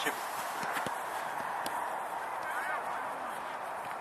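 Steady outdoor background noise with a couple of faint short taps.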